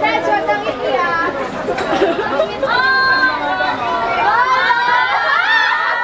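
Several people talking and calling over one another close by: the excited chatter of a small crowd of fans, much of it in high voices, with a few drawn-out calls in the middle.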